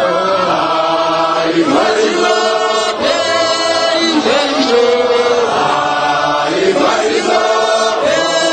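A group of voices chanting a hymn together, with long held notes that glide between pitches.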